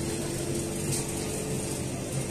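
Steady indoor background hum and noise, with no single distinct event.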